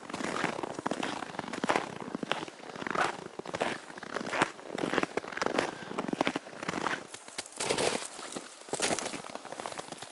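Boots crunching through snow at a steady walking pace, about three steps every two seconds.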